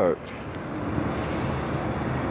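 Steady outdoor city background noise, a low even hum and hiss like distant traffic, slowly growing a little louder, with no distinct clicks or beeps.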